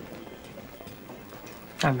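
Quiet café background, faint room murmur with light clatter, then a woman starts to speak near the end.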